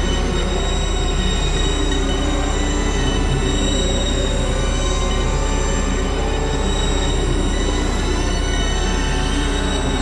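Dense experimental electronic noise music: several layered tracks merge into one steady, harsh drone, with many sustained high tones over a constant low hum and no pauses.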